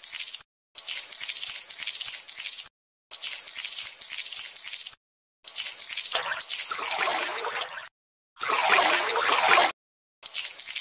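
Dubbed-in wet, squishy liquid sound effects: dripping and squelching in separate clips about two seconds long, each starting and stopping abruptly with short silences between them. The last two clips are fuller and louder.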